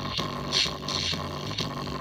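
Tiny 3-watt, 4-ohm speaker driver overdriven with a bass-boosted electronic track, a steady beat about two a second. The cone is being pushed to its limit and bottoming out.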